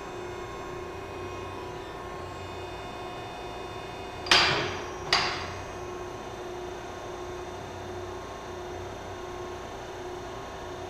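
Hydraulic tube bender running steadily as it draws square steel tubing around the die, its pump giving a steady hum. Two sharp metallic bangs ring out about four and five seconds in, under load.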